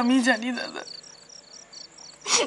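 Crickets chirping in short high pulses, roughly four a second, with a woman's voice over them in the first half second.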